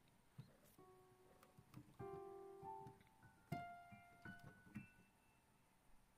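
Digital piano sounding a handful of quiet, scattered notes in no tune or rhythm as a cat steps across the keys, with several keys pressed together about two seconds in and soft key knocks between the notes.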